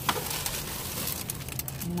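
Clear plastic wrapping rustling and crinkling as gloved hands rummage through a cardboard box, in a run of small irregular crackles.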